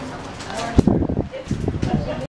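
Spectators' voices talking and calling out close to the microphone, loudest about a second in.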